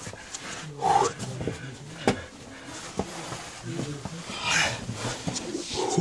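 A caver's breathing and short grunts while crawling through a tight cave passage, with two sharp knocks about two and three seconds in.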